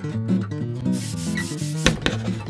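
Acoustic guitar music, with a scratchy chalk-on-chalkboard writing sound from about halfway through and a sharp click near the end.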